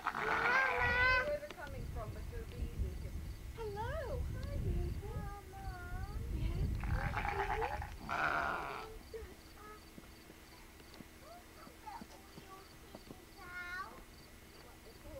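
Sheep bleating: one loud, wavering bleat in the first second, then fainter, shorter calls. A brief rustling noise follows around seven to eight seconds in.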